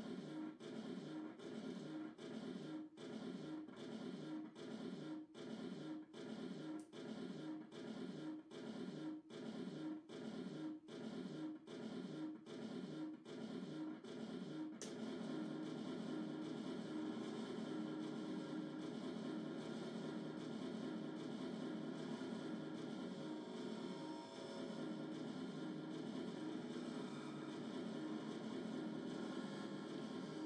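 Experimental live electronic music: a dense, distorted, effects-processed drone that pulses on and off about one and a half times a second, then turns into a steady unbroken drone about halfway through.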